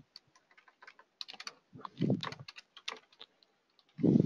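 Computer keyboard typing: scattered key clicks as a short name is typed in. A brief low murmur of voice comes about two seconds in.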